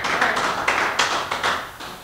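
Congregation applauding with hand claps, the clapping thinning out and dying away near the end.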